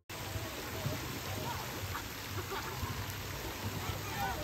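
Steady hiss of falling and splashing water from a water-park play structure and slide, with faint children's voices in the background.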